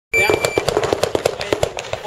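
Electronic shot timer's start beep, a single high steady tone of about half a second right at the start. It is followed by a rapid string of sharp gunfire cracks, several a second.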